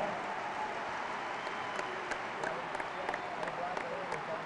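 Crowd applauding: a steady patter of many hands clapping.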